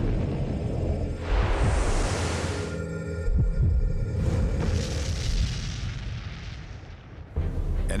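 Underwater launch from a submarine: two long rushing whooshes of water and gas, about a second in and again about four seconds in, over a low rumble and background music with held notes.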